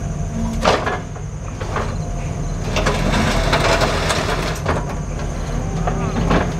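Compact track loader's diesel engine running steadily as the machine drives up to the logs, with knocks and rattles from the tracks and grapple bucket, busiest around the middle.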